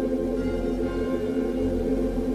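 Ambient instrumental music: a sustained, steady low drone with faint higher tones swelling in and out.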